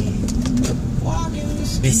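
A car's engine and road noise heard from inside the moving cabin: a steady low rumble.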